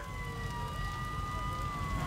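A siren wailing. Its pitch rises slowly, then begins to fall near the end, over a low rumble.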